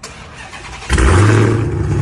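Dodge Charger Hellcat Redeye's supercharged 6.2-litre V8 cold-starting through a straight-piped exhaust with catless downpipes and no resonators or mufflers. The starter cranks for about a second, then the engine catches suddenly and loudly, flares and holds a fast cold-start idle.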